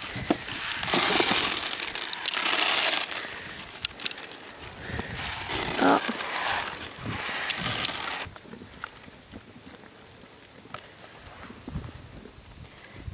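Dry feed rattling and rustling as it is poured from a plastic scoop into a feed box while sheep and goats crowd in to eat. The rustling stops about eight seconds in, leaving only faint clicks.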